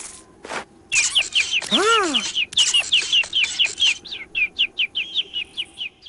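Cartoon chick chirping: a rapid run of short high cheeps, about four a second, each dipping slightly in pitch, with one lower whoop that rises and falls about two seconds in.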